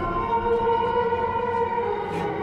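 Eerie film score: a sustained drone of several steady tones held as one dark chord.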